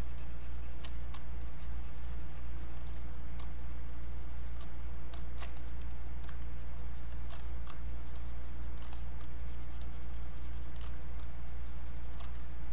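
Scattered faint clicks of computer input devices at a desk, over a steady low electrical hum from the recording setup.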